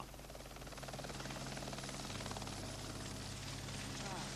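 A light jet (turbine) helicopter running steadily nearby: an even turbine hum with a fast, regular rotor beat.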